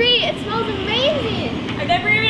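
Young girls' voices talking, high-pitched and lively.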